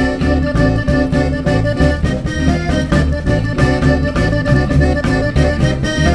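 Live band music with a steady beat: accordion leading an instrumental passage over plucked upright double bass and strummed acoustic guitar.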